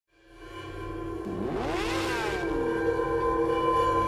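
Produced intro sound design for a logo animation: sustained tones fade in from silence, and about a second in a sweeping glide rises and then falls away, like an engine-rev whoosh, over a held drone.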